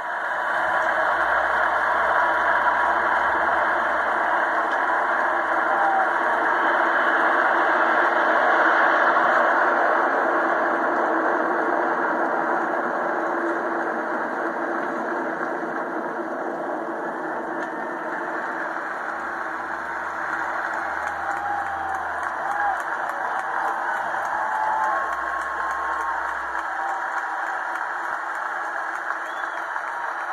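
Red Arrows' BAE Hawk jets flying over in formation: a steady, loud rushing jet noise, strongest in the first ten seconds and then easing off, heard as played back through a television.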